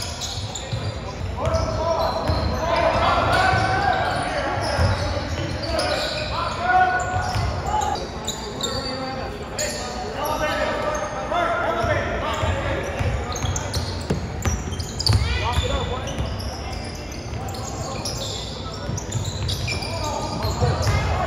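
Basketball game sounds in a large gymnasium: a ball dribbling on the hardwood court, mixed with voices of players and spectators calling and talking.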